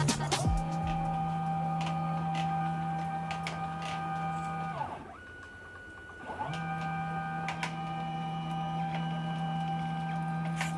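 Stepper motors of a 3D-printed robot arm whining at one steady pitch as the joints move. The whine slides down and fades near the middle, is nearly gone for about a second and a half, then rises back to the same pitch and holds, with a few faint clicks.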